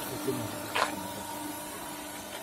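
Steady hum of a QT4-18 hydraulic block machine's power unit, its electric motor and hydraulic pump running, with a short hiss just under a second in.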